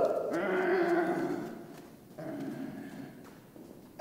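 A man making an airplane engine noise with his voice: a steady hum held for over a second, then a second, shorter one.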